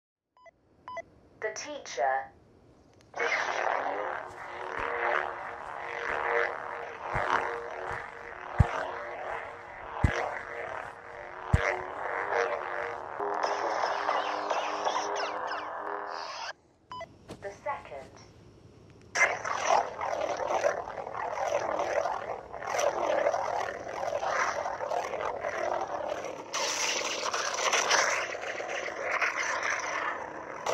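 Xenopixel V3 lightsaber soundboard playing its sound fonts: a steady blade hum with swing sounds as the saber is swung, and several sharp clash-like hits a third of the way in. It breaks off just past the middle, then a different font's hum and swings take over.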